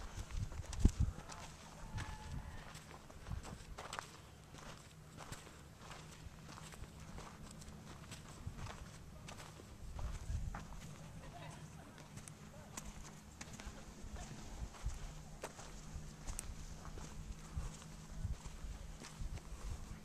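Footsteps on a dirt path and handling knocks on a handheld camera, irregular low thumps with a sharp knock about a second in, over a steady low hum.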